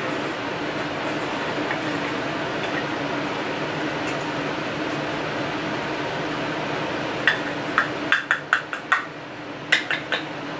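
A steady room hum and hiss, then in the last few seconds a quick run of about ten light clicks and clinks as a loose-powder jar and makeup brush are handled.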